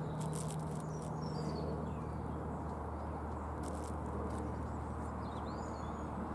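A hand brushing soil over planted garlic cloves, giving a few brief scratchy rustles, with faint bird chirps and a steady low hum in the background.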